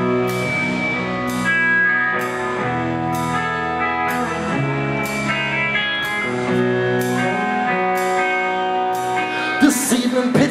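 Live rock band playing an instrumental passage: sustained electric guitar chords over a cymbal struck about once a second. The drums and band hit harder just before the end, leading into the vocal.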